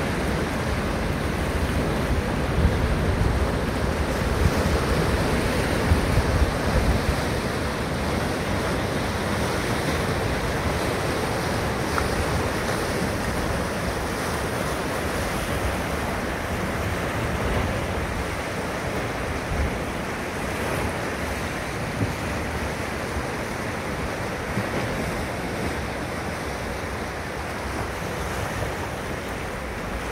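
Rough sea surf washing and breaking over rocks, a continuous rushing wash. Wind buffets the microphone in low gusts, heaviest in the first several seconds.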